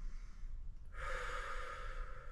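A man drawing in one long, deep breath through the mouth, starting about a second in: the final inhale before a breath hold.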